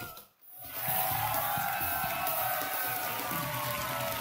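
Show band music that drops out for a moment about half a second in, at an edit, then comes back with a fuller, brighter sound.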